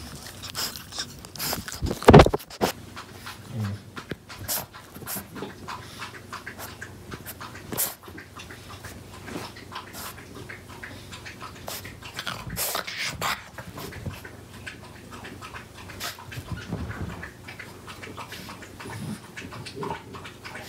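French bulldog puppy playing on a bed comforter: rustling and scratching of the fabric with many small clicks, and short dog sounds, the loudest burst about two seconds in.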